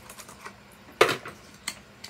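Small plastic clicks from handling a serum bottle and its plastic cap: one sharp click about a second in and a lighter one near the end.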